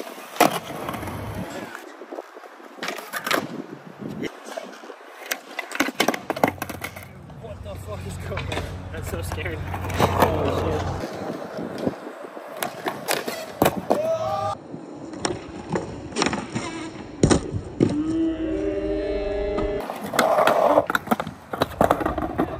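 Skateboard on a concrete skatepark: urethane wheels rolling with a steady rumble through the middle, and many sharp clacks of the board popping, striking ledges and landing.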